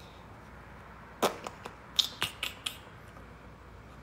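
A quick run of about six or seven sharp clicks close to the microphone, starting about a second in and over within about a second and a half.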